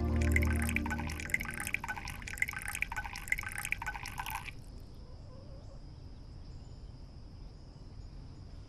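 Brewed herbal medicine poured from the spout of a pot into a porcelain bowl: a splashing trickle that stops about four and a half seconds in.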